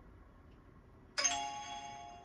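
Countdown timer's alarm chime, a single bright bell-like ding-dong tone a little over a second in that rings out and fades over about a second, signalling the end of the break and the start of the next 15-minute study session. Faint room hiss before it.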